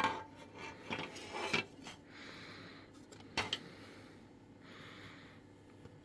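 Hard plastic radio case halves being handled: a sharp click, then several small clicks and light knocks in the first second and a half, another knock a little after three seconds, and soft rubbing between.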